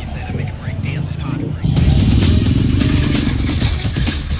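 Street traffic: a vehicle engine swells suddenly about two seconds in and rises then falls in pitch as it passes, with voices beneath it.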